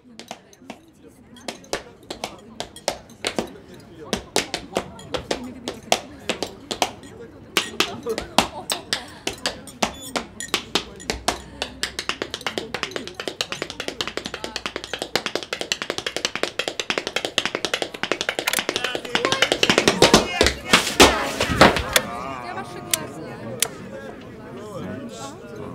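Dance steps tapping and stamping in a quick, irregular rhythm that grows denser and louder, over a rising murmur of voices and music. A run of the heaviest stamps comes near the end, then the din eases.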